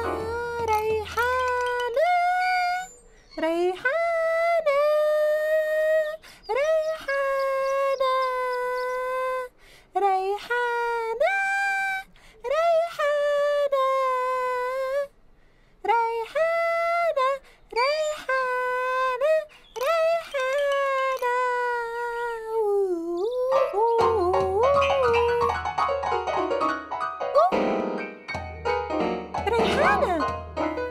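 A high, childlike voice sings a slow song in long held notes, each phrase opening with an upward slide, with short breaks between phrases. For the last few seconds, loud band music with deep bass, drums and keyboard takes over.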